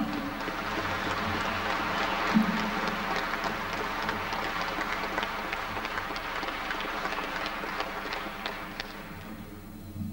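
Audience applauding. The applause is steady at first and dies away near the end.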